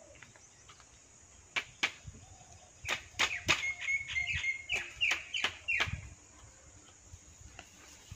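Machete strikes on bamboo: two sharp chops, then a quicker run of about ten chops, some with a brief ring, ending about three-quarters of the way through.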